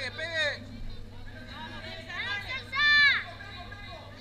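Spectators shouting at the fighters over a background of crowd chatter, with a short shout at the start and a louder, drawn-out shout about three seconds in. A steady low electrical hum runs underneath.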